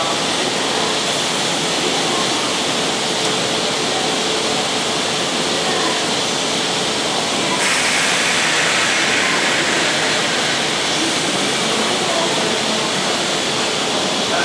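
Steady hiss from a JR 185 series electric train standing at the platform, mixed with station background noise. About seven and a half seconds in a louder hiss sets in, and the train starts to move near the end.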